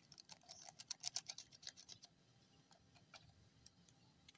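Crinkling ticks of a small sachet being squeezed and shaken empty over a plastic jar, a dense run of quick ticks for about two seconds, then a few scattered ones.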